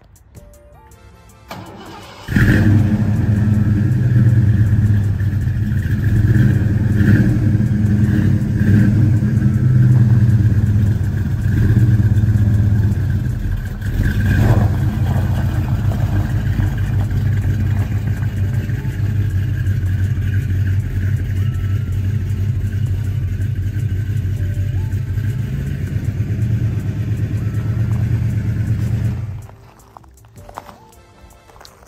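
Old pickup truck's engine starting about two seconds in, then idling with a few brief revs before cutting off just before the end.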